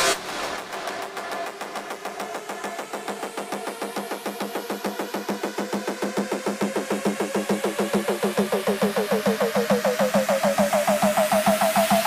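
Psytrance build-up: a fast-pulsing synth note climbing slowly in pitch and growing louder over a held low note, which gives it an engine-like rev.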